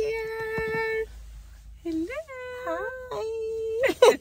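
A woman's high voice holding long sung notes, sliding up into them and bending the pitch between them: about a second held at the start, then several swoops, then another long held note near the end.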